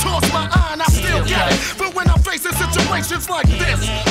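Hip hop music: a beat with deep bass and drum hits, with a voice rapping over it.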